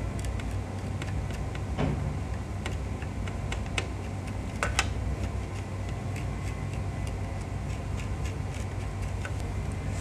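Cotton swab scrubbing a laptop motherboard to clean burn residue off around a chip: faint, scattered scratchy clicks over a steady low hum.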